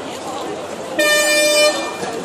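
A horn sounds once, starting abruptly about halfway through and lasting just under a second, as one steady blaring tone over crowd chatter.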